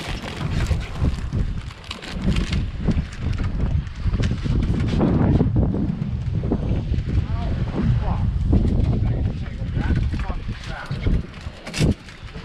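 Strong wind buffeting the microphone in a steady low rumble on an open boat in rough water, with faint, indistinct voices in the background.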